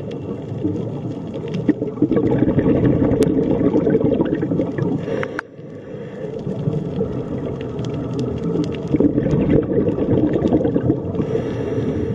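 Underwater sound picked up by a camera in a waterproof housing: a dense, muffled low rumble of moving water with scattered faint clicks, dipping briefly about five seconds in.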